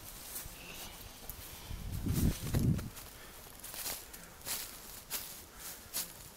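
Footsteps of a person walking on a woodland trail, a little under two steps a second. A louder low rumble comes about two seconds in.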